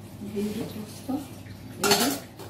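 A stainless-steel lid and bowl clinking together as the bowl is covered and set on the counter, one sharp metal clink near the end.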